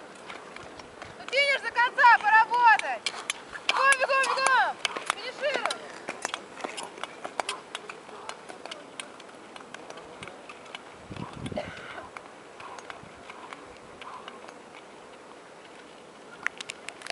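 People shouting loud, high, drawn-out calls of encouragement to speed skaters, in two bursts within the first five seconds, followed by a run of sharp clicks and then quieter outdoor background.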